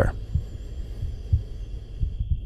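Heartbeat sound effect: low thumps about a second apart over a steady low hum, with a thin steady high tone above.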